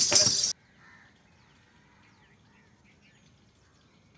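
A loud sound full of sharp clicks cuts off abruptly about half a second in. What follows is a near-quiet background with faint chirps of small birds.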